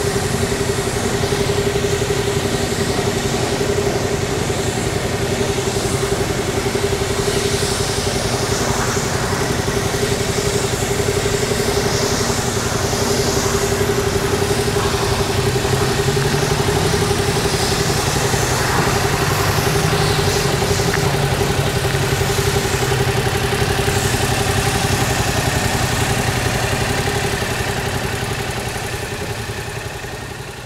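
Yamaha Tracer 700 motorcycle's parallel-twin engine idling steadily, fading out near the end.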